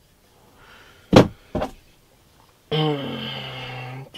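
Two sharp knocks about half a second apart, then a drawn-out low pitched tone, like a creak or a hummed note, lasting more than a second.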